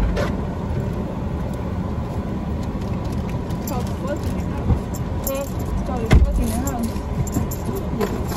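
Parked car with its engine idling, heard from inside the cabin, and a heavy thump about six seconds in as a passenger gets into the back seat, typical of a car door being shut.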